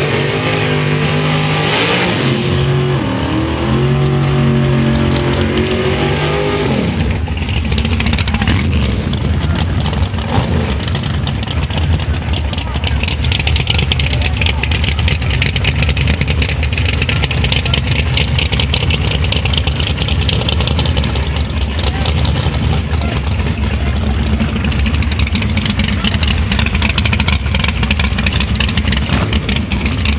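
Drag-race car engines running loud, revved up and down in steps for the first few seconds, then held at high revs as a fast, harsh rattle of firing over a noisy hiss, with tyre smoke from a burnout.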